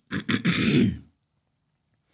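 A man clearing his throat into a close microphone: a brief rasp, then a longer one, both within the first second.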